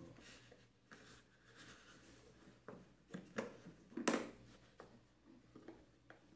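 Fingers working the latches of a hard plastic tool case: scattered faint plastic clicks and scrapes, with one sharper click about four seconds in.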